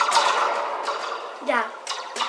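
Homemade echo microphone, a plastic tube with a metal spring inside, rattling and ringing with a really loud, hissy, reverberant metallic wash full of fine clicks. A short spoken "yeah" cuts in about three quarters of the way through.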